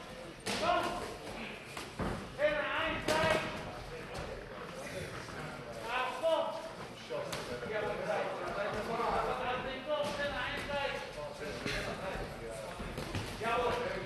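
Men's voices calling out at ringside in short bursts, with a few sharp thuds of gloved punches landing.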